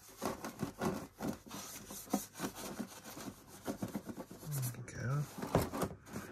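A paintbrush being worked over a plastic RC truck body shell, brushing on a wet cleaning liquid in a run of irregular rubbing and scraping strokes. A brief low murmured voice comes near the end.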